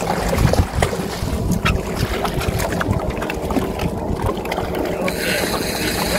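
Wind buffeting the microphone over water, with splashing as a hooked redfish thrashes at the surface beside the boat and is lifted out by hand; a few sharp splashes stand out.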